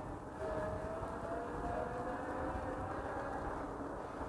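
Electric bike's hub motor whining at a steady, slightly rising pitch, over the rumble of tyres and wind on the road.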